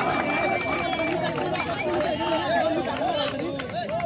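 A kabaddi raider's breath-held chant of 'kabaddi, kabaddi' repeated without a break, over the shouting of a crowd of spectators.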